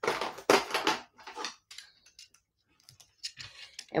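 Sheets of paper and cardstock being handled on a craft mat. There is a sliding rustle in the first second or so, then scattered light clicks and taps.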